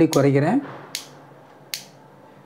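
A man speaks for a moment, then two short, sharp clicks come about a second apart.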